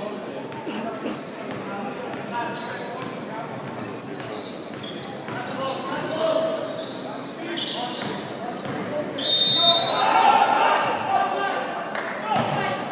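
Basketball being dribbled on a hardwood court in a large arena whose crowd is standing in silence, with scattered voices in the hall. About nine seconds in comes the loudest sound, a short high-pitched squeal, followed by a louder burst of voices.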